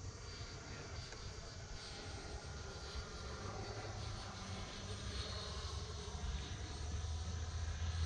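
Whine of an RC jet's 80mm 12-blade electric ducted fan flying overhead, the sound of the distant model swelling and fading as it passes and growing a little louder near the end, over a low rumble.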